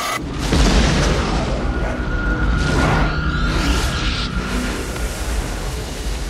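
Film sound effect of a deep rumbling boom, a tremor shaking the drill site, swelling up about half a second in and rolling on under music.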